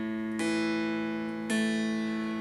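Folkcraft custom baritone mountain dulcimer in Honduras mahogany, tuned A-E-A, strummed twice: a chord struck about half a second in and again about a second later, each left to ring and slowly fade.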